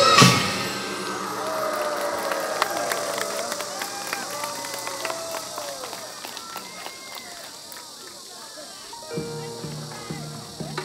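Korean traditional folk music ends on one loud final stroke just after the start, its ringing dying away. Quieter voices follow, and a new piece of music starts near the end.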